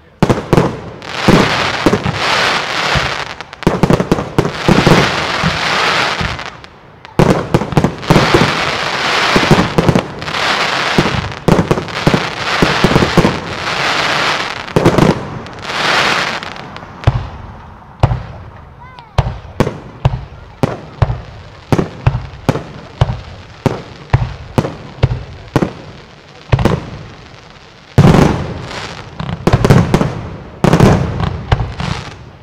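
Fireworks display: dense volleys of shots and crackling for the first half. Then a run of separate sharp bangs, about two a second, before it thickens into dense firing again near the end.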